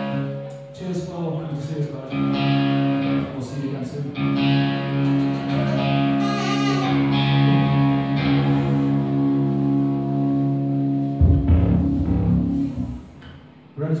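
Amplified electric guitar sounding long, effects-laden held notes and chords that ring on for several seconds at a time. A deep low rumble comes in about eleven seconds in and dies away, and things drop quieter just before a voice at the very end.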